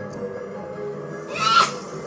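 Soundtrack of an animated movie playing loudly from a television: background music, with one short, loud, rising sound about one and a half seconds in.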